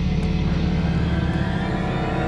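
Drama background score: a steady, sustained low musical drone with no rhythm or melody.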